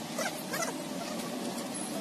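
Two short animal calls about half a second apart, each sweeping up and down in pitch, over steady outdoor background noise.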